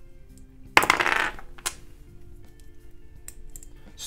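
Plastic LEGO bricks clattering as they are picked through by hand, loudest in a short burst about a second in, followed by a few light clicks of bricks being handled. Quiet background music plays throughout.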